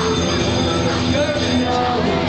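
Loud fairground midway din: ride machinery, music and crowd mixed together, with a steady high-pitched squeal that cuts off shortly before the end.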